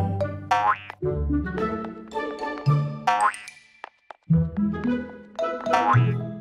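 Playful cartoon background music with three quick rising-pitch sound effects: one about half a second in, one about three seconds in, and one near the end.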